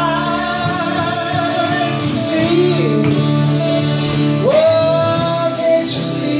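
Live acoustic duo: male vocals over two strummed acoustic guitars, with long held sung notes and a new held note about four and a half seconds in.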